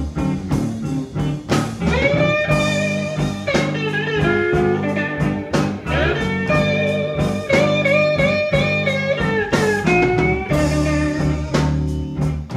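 Electric Chicago blues band playing an instrumental break: an electric slide guitar leads with long held notes that glide into pitch and waver, over bass and drums.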